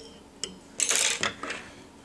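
Small metal fly-tying tools being handled on the bench after the whip finish: a light click, then a short metallic clatter about a second in, then a few lighter clicks.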